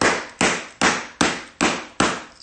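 A hand slapping the open pages of a Bible in a steady beat: about five sharp slaps, roughly two and a half a second.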